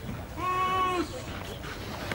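A single drawn-out call, held at one steady pitch for a little over half a second, starting about half a second in.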